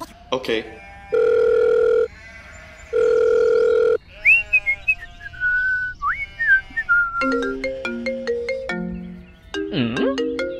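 Cartoon sound effects laid over music: two long, loud steady beeps about a second apart, then a whistled tune that slides up and down, then a run of short plucked notes.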